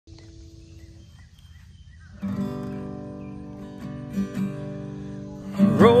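Acoustic guitar strummed, its chords starting about two seconds in and ringing on as the song's introduction, after a faint opening. A man's singing voice comes in near the end.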